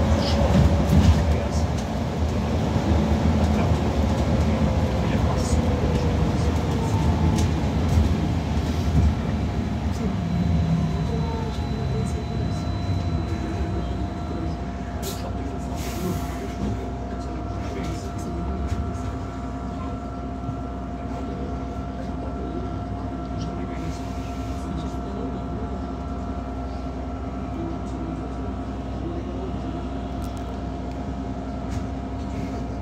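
Cabin sound of a Wright GB Kite Hydroliner hydrogen fuel-cell double-decker bus. Road rumble and an electric drive whine fall away over the first ten seconds or so as the bus slows. It then settles into a quieter, steady hum with several held tones while the bus stands.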